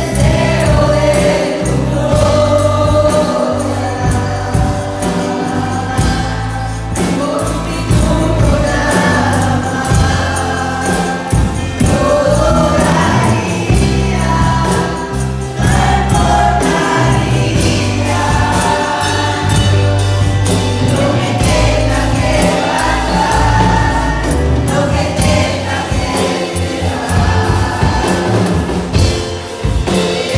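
Live church worship music: a group of singers on microphones leading a congregation that sings along, backed by a band with a steady beat and deep bass.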